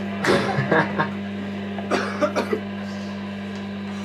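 Steady electric hum from the band's amplifiers and PA during a pause between songs, broken by a few short sounds from voices in the room.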